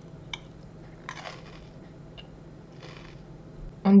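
A person chewing a bite of a soft chocolate-glazed wafer bar with caramel, peanuts and raisins, close to the microphone: a small click, then two short soft chewing sounds about a second in and near the end. Speech begins right at the end.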